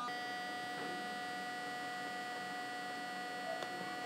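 Steady electrical hum and whine: several constant high tones over a low hiss, unchanging throughout, with one faint tick near the end.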